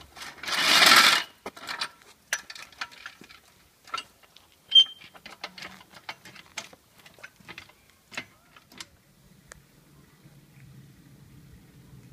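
A short burst from a pneumatic impact wrench, about a second long, at the start. Then a trolley floor jack worked by its long steel handle: irregular metal clicks and clanks, the loudest a sharp clink about five seconds in. A faint low steady hum in the last few seconds.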